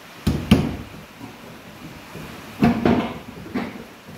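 Sharp knocks of carpentry on wooden window and door frames: two quick strikes near the start, then a few more knocks and clatter about two and a half seconds in.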